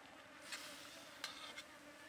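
Metal tongs scraping and clinking against a steel wok of simmering soup, twice, over a faint steady buzzing hum.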